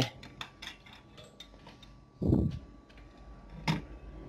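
Light clicks and taps of hands handling a circuit board, solder wire and a soldering iron on a workbench: a quick run of small clicks in the first second and a half, a louder dull knock about two seconds in, and one sharp click near the end.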